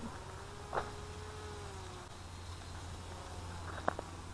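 Motor and propeller of a small RC microlight trike buzzing as it flies in to land, a steady thin tone that fades out about two seconds in. A sharp click just before the end.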